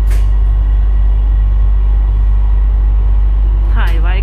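Airport Rail Link train running, heard from inside the carriage: a loud, steady low rumble with a faint steady whine above it.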